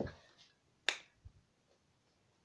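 A single sharp click about a second in, a wall light switch being flipped to turn the room light on, followed by a much fainter knock.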